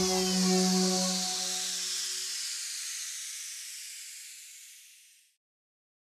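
The last chord of an intro logo jingle dying away under a high, hissing shimmer that sweeps downward and fades. It cuts off to silence a little over five seconds in.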